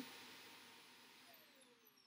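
Faint vacuum cleaner motor winding down after being switched off: its whine slides steadily down in pitch as the rushing air noise fades away.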